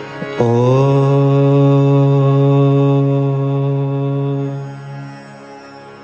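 A man chanting one long, low "Om" into a microphone. After a short upward slide at the start, it holds a single steady pitch for about four seconds, then fades away.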